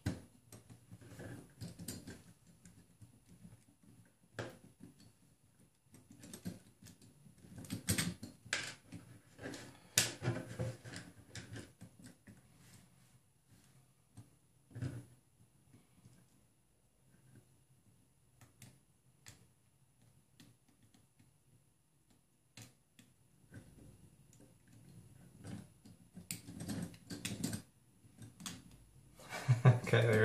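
Sporadic clicks and light metallic clinks of small steel hardware being handled, as washers are worked onto an M4 bolt next to a 624ZZ bearing. They come in short flurries separated by near-quiet gaps.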